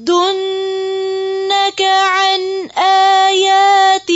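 A woman's voice reciting the Quran in Arabic in melodic tajweed style, holding long steady notes on drawn-out vowels. The voice breaks off briefly twice, about a third and two-thirds of the way through.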